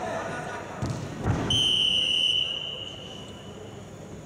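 A whistle blown once: a single steady high note lasting about a second, then fading. A low thud comes just before it.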